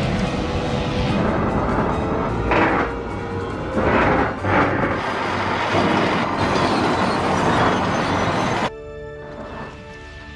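Tense orchestral television score mixed with a rumbling, rushing sound effect of a plunging turbolift, with several louder surges. About three-quarters of the way through it drops suddenly to a quieter, held passage of music.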